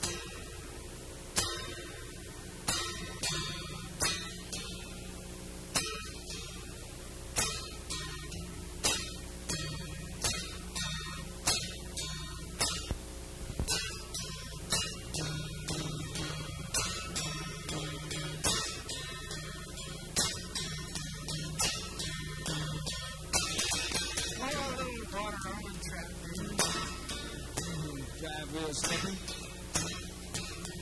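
Solo steel-string acoustic guitar, flatpicked in a steady rhythm as the accompaniment to a train song, with a sharply struck chord about every second and a half.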